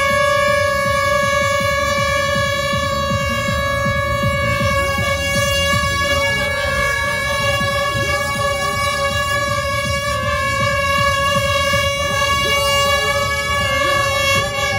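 An air horn sounding one long, unbroken steady tone, the start signal for a mass cycling ride, over the noise of the crowd.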